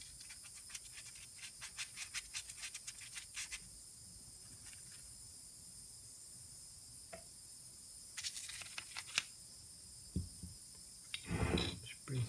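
Small stiff-bristled brush scrubbing soapy water onto an aluminium engine crankcase, a quick run of scratchy strokes for the first few seconds and another short burst later on. Near the end, low knocks as the engine casing is handled and turned.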